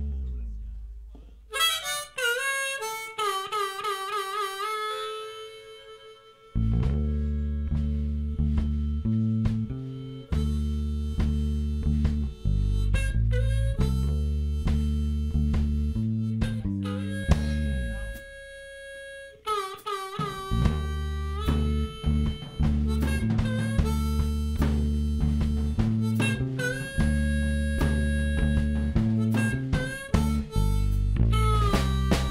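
Blues harmonica playing alone with bent, wavering notes, then from about six seconds in the band joins with electric bass, drums and electric guitar while the harmonica plays long held and bent notes over a light, improvised blues groove. The band drops back briefly near the middle before coming in again.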